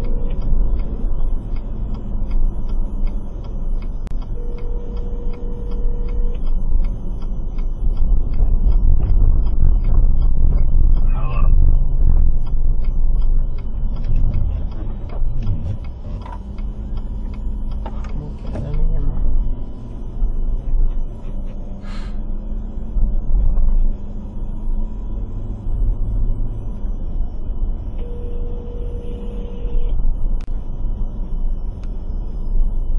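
Low rumble of a car's engine and road noise heard from inside the cabin through a dashcam, with a turn signal ticking at the start. Near the end a phone starts ringing with a steady electronic tone.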